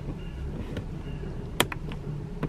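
A plastic pry tool working at the door courtesy-light housing of a Tesla Model 3, with one sharp click about one and a half seconds in and a fainter one near the end, over a low steady hum.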